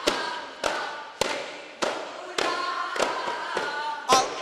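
Daf frame drums struck together by a group in a steady beat, about seven strokes a little over half a second apart, with group singing of a duff muttu song between the strokes.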